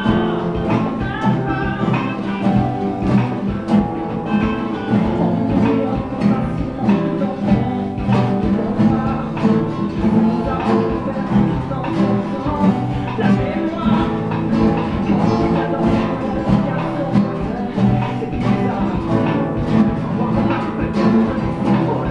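Four nylon-string classical guitars playing a song together in a steady rhythm.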